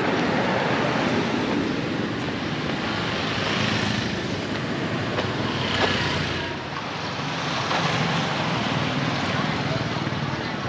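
Street traffic noise: passing vehicles and engines making a steady rush of sound, dipping briefly about seven seconds in.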